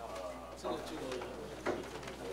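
Indistinct voices of several people talking in a meeting room, with two light knocks about a second apart.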